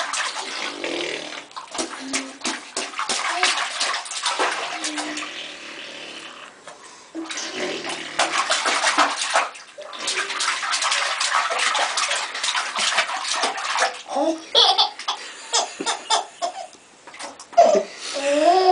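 Bath water splashing and sloshing in a tub as babies slap and kick in the water, in long stretches with a lull in the middle. Short baby laughs and squeals come through in the last few seconds.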